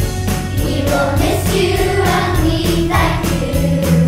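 A song: a group of voices singing together over a backing track with a steady beat and jingle bells.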